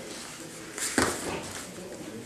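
A body hitting a training mat with a single thud about a second in, as an ankle-trip takedown lands.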